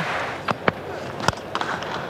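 Steady murmur of a stadium crowd with a few sharp cracks, one of them a cricket bat striking the ball on a full-faced drive.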